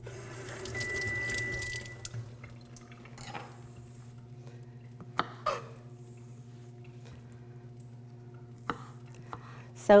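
Kitchen faucet running briefly as a green onion is rinsed, cutting off about two seconds in. Then a few sharp knife taps on a plastic cutting board as the onion is sliced, over a steady low hum.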